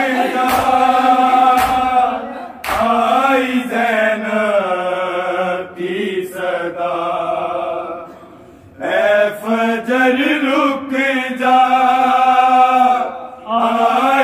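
Male noha reciters chanting a Shia lament without instruments, in long held phrases with a short break about two-thirds of the way through. In the first few seconds the chant is beaten out by sharp matam strikes, hands on bare chests, about once a second.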